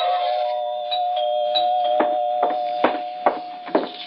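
A radio-drama music bridge ends on a held note that fades. From about halfway in, it is cut through by about five sharp, evenly spaced knocks at a door, roughly two a second, as a visitor arrives.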